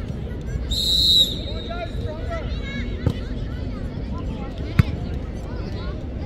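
Referee's whistle blown once, a short shrill blast about a second in, followed by two sharp thumps of the football being kicked, over distant shouting of players and spectators.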